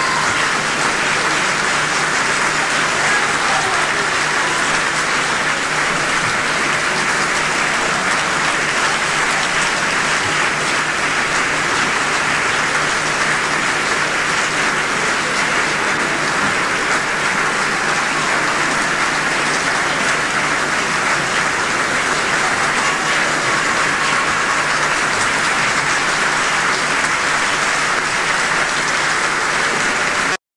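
Theatre audience applauding steadily: dense, even clapping with no let-up, heard through a worn VHS transfer with a low steady hum underneath.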